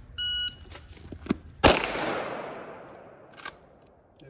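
Electronic shot timer's start beep, then about a second and a half later a single loud pistol shot fired from the draw, its report echoing and dying away over a second or so. A faint sharp knock follows near the end.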